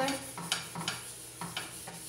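A cloth rubbed in quick repeated strokes across the surface of a flat pan on a gas stove, a short scrape with each stroke, wiping the pan before cooking.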